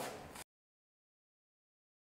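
Near silence: a brief faint tail of room sound fades out in the first half-second, then total dead silence, as at an edit cut.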